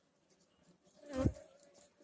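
A flying insect buzzing close past the microphone: a short, loud buzz about a second in that trails off into a faint thin hum.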